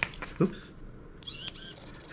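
Small hobby servo in a popsicle-stick robot arm's gripper moving briefly: a click, then a short high-pitched whir of about half a second, starting a little after a second in.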